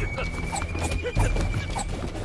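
The drama's soundtrack: one long high, steady whistle-like tone with a string of short chirping calls over soft background music, typical of birdsong or insect ambience laid under an outdoor garden scene.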